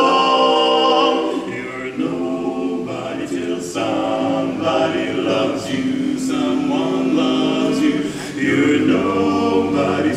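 Male barbershop quartet singing a cappella in four-part close harmony, the chords shifting every second or so, a little softer about two to three seconds in.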